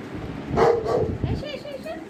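A dog barks loudly about half a second in, then gives a run of short, high yips or whines near the end.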